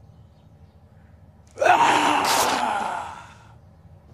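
A man's loud, breathy straining grunt as he flexes his legs, with his denim jeans ripping apart. It starts suddenly about a second and a half in and fades out over about two seconds.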